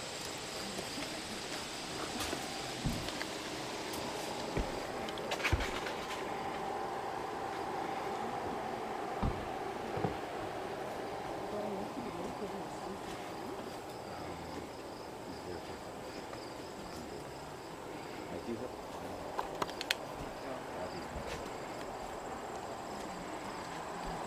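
Quiet ambience with a faint steady high hum and a few scattered soft knocks.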